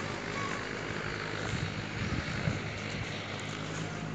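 Steady drone of oil mill machinery running, with a low multi-toned hum under an even mechanical noise.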